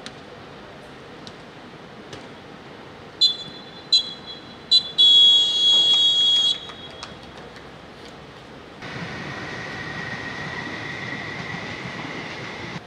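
Referee's whistle blown for full time, starting about three seconds in: three short blasts and then one long blast. Later a steady background hiss with a faint high hum sets in.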